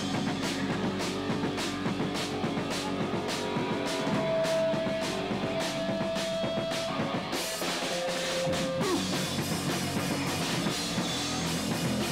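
Live punk band playing loud on a camcorder microphone: a steady pounding drumbeat under distorted electric guitar, with a long held guitar note in the middle.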